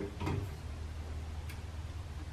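The metal cap of an air-cleaner intake is being fitted over its glass precleaner jar: a clink with a short ring just after the start, then a light tick about a second and a half in, over a steady low hum.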